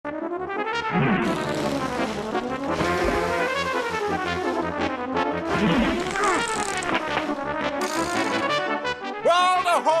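Theme music played on brass instruments, with pitches gliding up and down, and a voice calling out near the end.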